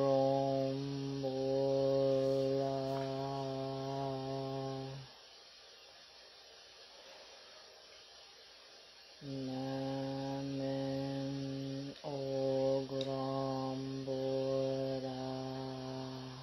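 A voice chanting long held notes on one steady low pitch, mantra-style: one long tone to about five seconds in, a pause of about four seconds, then another long tone to the end with a brief break in the middle.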